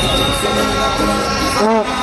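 Loud music playing, with voices chanting a long 'oh' near the end.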